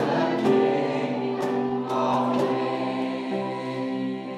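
Worship song in a church service: a male worship leader sings into a microphone while playing an electronic keyboard, with several voices singing along.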